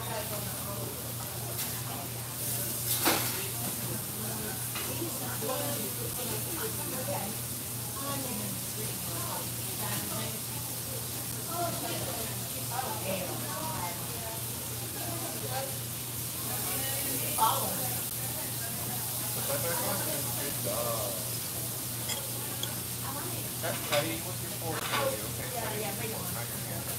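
Diner background: a steady frying hiss from the grill, with dishes and cutlery clinking now and then and a few sharper clinks. Under it run a low steady hum and faint distant voices.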